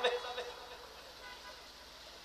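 A man's word through a microphone trailing off, then a pause with only faint, steady background noise.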